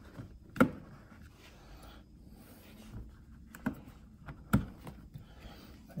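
A few sharp plastic clicks and knocks as a rear mud flap is handled and pressed into place against a Tesla Model 3's wheel arch; the loudest comes just over half a second in, two more near the four- and four-and-a-half-second marks.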